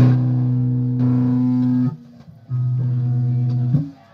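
Electric guitar playing two long held low notes: the first struck right at the start and ringing for nearly two seconds, then, after a short pause, a second one held until it is cut off shortly before the end.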